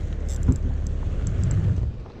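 Low steady rumble of wind buffeting the microphone, with a single thump about half a second in and a few faint clicks.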